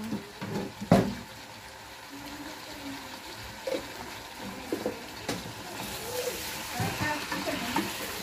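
Chicken pieces sizzling in a pot on the stove while being stirred with a wooden spoon, with sharp knocks of the spoon against the pot about a second in and again about five seconds in. The sizzling grows louder near the end.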